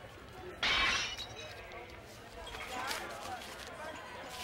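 A sudden short burst of noise a little over half a second in, the loudest sound here, followed later by faint voice-like sounds.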